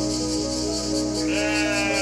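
A sheep bleats once about a second in, a long call that rises then holds, over background music.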